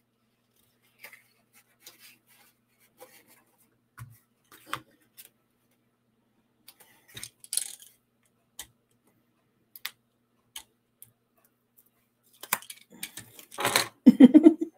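Paper and card pieces being handled, slid and pressed down on a craft mat: scattered small clicks and rustles, busier about halfway through and again near the end.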